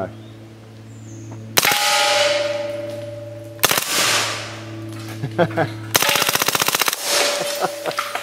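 Heckler & Koch MP5A3 9mm submachine gun with a Silencerco Octane 9 HD suppressor fired on full auto: two short bursts about two seconds apart, then a longer burst of about a dozen rounds six seconds in, each burst followed by the ringing of hit steel targets.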